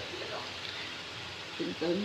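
Quiet, steady background hiss, with a short murmured voice near the end.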